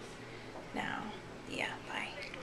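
Soft, near-whispered speech: two short bursts of a voice, one a little under a second in and one near the end.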